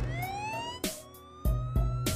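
Police car siren winding up in one long rising wail, over background music with a few sharp hits.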